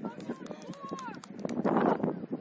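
Shouting voices of players and touchline spectators at a junior football match, several calls overlapping, with the loudest shout near the end.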